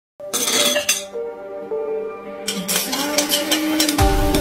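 Background music with held tones, over sharp clinks of ice and glass: a couple near the start and a quick run of clinks in the second half.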